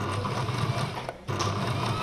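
Electric sewing machine stitching fabric, running steadily, easing off briefly about a second in before picking up again.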